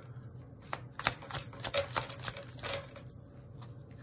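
A deck of tarot cards being handled and shuffled by hand: a run of quick, irregular clicks and snaps of card on card lasting about two seconds, then dying away.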